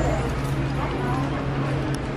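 Shop background: murmur of voices over a steady low hum, with a few light clicks, one near the end.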